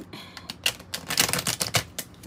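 A deck of tarot cards being shuffled by hand: a quick run of card clicks and flicks, thickest about a second in.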